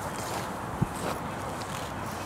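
Steady outdoor background noise with a single short, soft low thump just under a second in, among people kneeling on grass petting a dog.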